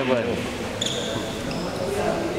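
Voices of players talking in a large sports hall between rallies, with a couple of short high squeaks about a second in.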